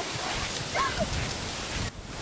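Outdoor background noise with a few short, high calls from an animal about halfway through.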